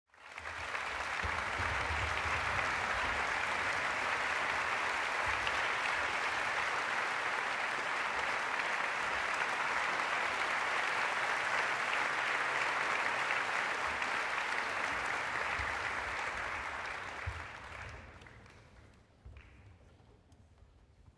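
Concert hall audience applauding steadily, the applause dying away near the end.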